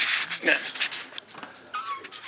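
Speech: people talking in a room, with a man saying "yeah" at the start, and brief rustling between the words.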